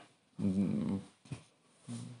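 A man's hesitant voiced filler between phrases: a short hum or mumbled sound of about two-thirds of a second, quieter than his speech, then a faint click like a lip smack, with his voice starting again near the end.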